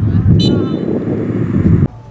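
Wind buffeting the camera microphone, a loud low rumble, with players' shouts over it on the football pitch; the rumble cuts off abruptly near the end.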